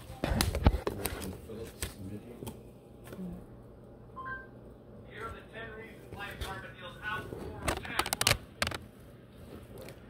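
Sharp knocks and clicks of handling, the loudest within the first second and a cluster more about eight seconds in, with faint speech in between.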